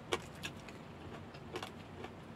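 Chopsticks clicking against a small bowl and the fried fish in it: a sharp click just after the start, a lighter one about half a second in, and a short run of clicks about a second and a half in.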